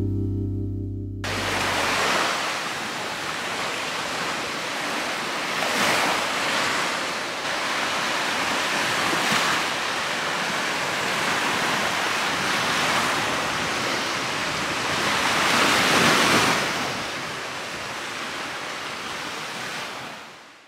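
Small lake waves washing onto a sandy beach, the hiss of the surf swelling every three to four seconds. Background music ends about a second in.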